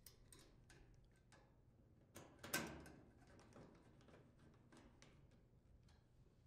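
Mostly quiet handling of a sheet-metal cover and a nut driver on a washer's rear panel: scattered faint clicks and ticks, with one brief louder metallic scrape about two and a half seconds in as the cover is fitted and its screw secured.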